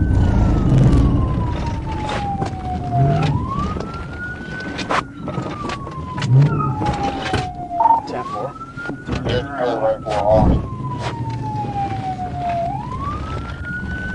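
Police patrol car siren in wail mode. Each cycle rises quickly, then falls slowly, repeating about every five seconds. Scattered sharp clicks and knocks sound under it.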